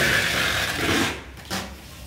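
Scraping, rubbing handling noise lasting about a second, as the metal power-amplifier chassis is handled and shifted on the carpet.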